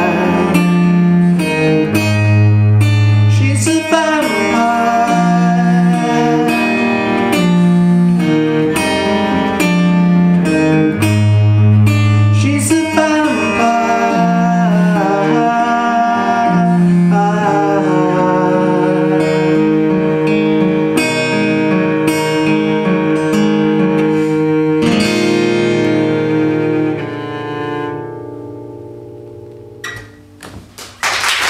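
Acoustic guitar strumming chords over a bowed cello holding long low notes. The last chord fades out over the final few seconds.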